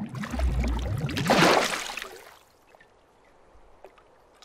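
Cartoon water sound effect: a rushing splash with a deep thump near the start. It swells to its loudest about a second and a half in and dies away by about two and a half seconds.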